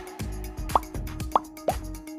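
Background music with a steady beat, over which three quick rising cartoon pop sound effects go off, the first under a second in and the last near the end, as the animated subscribe-button graphics pop into view.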